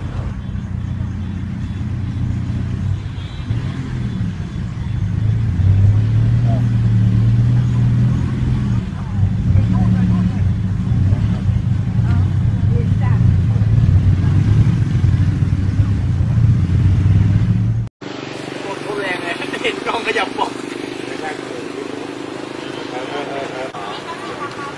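A steady low rumble with faint voices over it, cut off abruptly about eighteen seconds in; after the cut, several people talking outdoors.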